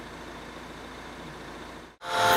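A faint, steady low hum with hiss that fades out just before the end.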